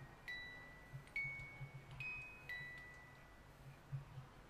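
Small metal chimes ringing: four separate clear notes at slightly different pitches, each struck sharply and left to ring out.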